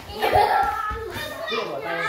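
Indistinct voices talking in a room, with nothing else standing out.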